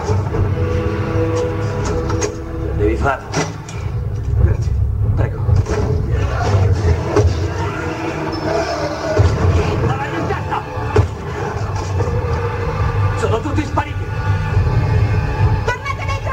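Noise-music recording: a dense, continuous low rumble layered with sampled voices and horn-like held tones.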